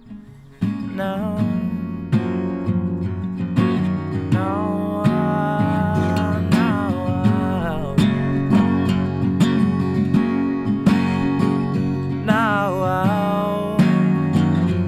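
Acoustic guitar strummed. It plays quietly at first, then the strumming turns loud about half a second in and carries on in a steady rhythm. A wordless sung melody with wavering pitch runs over it.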